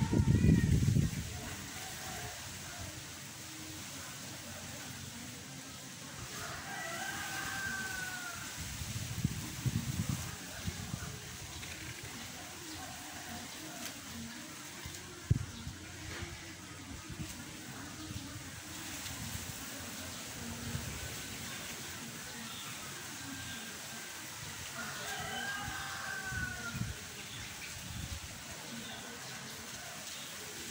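Wind blowing, with gusts rumbling on the microphone at the start, around ten seconds in and near the end, over a steady hiss. A rooster crows twice, each a long arching call, about seven seconds in and again about twenty-five seconds in. A single sharp knock comes about fifteen seconds in.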